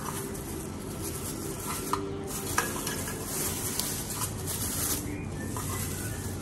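Thin clear plastic wrapping crinkling and rustling as it is handled and pulled off a square glass container, with a couple of small clicks about two seconds in.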